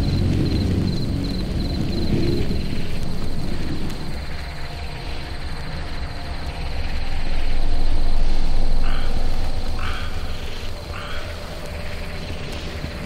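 Frogs croaking in a swamp soundscape, three short croaks about a second apart near the end, over a low steady drone. A high, fast cricket trill runs on top.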